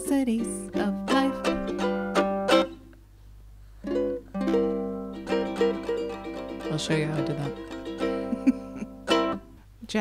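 Ukulele strummed in chords, closing out a song. The strumming stops about three seconds in, then comes back with held, ringing chords and a final strum near the end.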